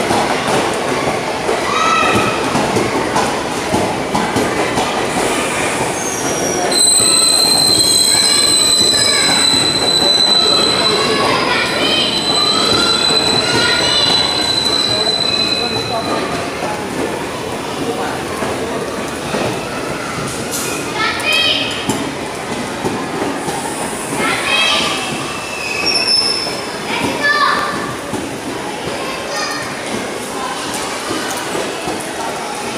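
Indian Railways passenger coaches rolling past along the platform line: a steady rumble of wheels on rail, with a high, steady wheel squeal from about seven seconds in until about sixteen seconds in, and shorter squeals scattered through the rest.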